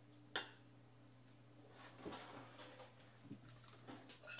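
Near silence over a steady low hum, broken by one sharp click about a third of a second in, then faint rustling and a soft tap around two to three seconds in.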